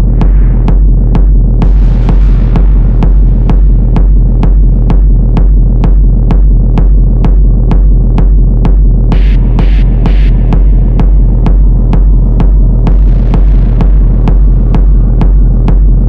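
Techno track: a steady kick-drum beat of a little over two beats a second over a continuous deep bass, with ticking hi-hats. Hissing swells rise about two seconds in and again near the end, and three short high-pitched stabs come around the middle.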